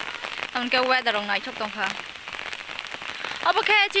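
Steady rain pattering on the surface of a pond. A voice sounds over it in the first half and again near the end.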